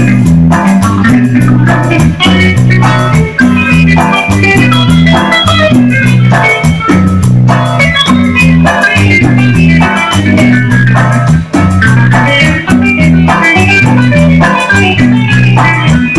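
Live cumbia band playing an instrumental passage: electric guitar lead over a repeating bass line, keyboard, drum kit and congas.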